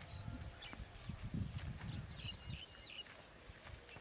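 Outdoor ambience: uneven low gusts of wind on the microphone that ease off a little under three seconds in, a few short chirping bird calls around the middle, and a steady high whine.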